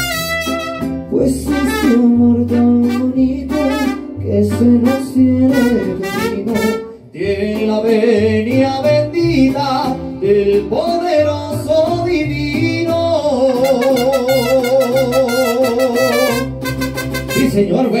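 Mariachi band playing a song live, with trumpet and violin melody over a steadily pulsing guitarrón bass.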